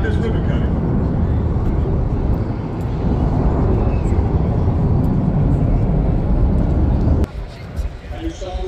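Wind buffeting the microphone: a loud, uneven low rumble that cuts off suddenly near the end.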